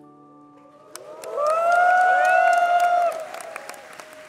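Last held piano notes of a ballad ring out, then about a second in a concert audience breaks into high-pitched cheering and clapping. The cheering is loudest for about two seconds before thinning to scattered claps.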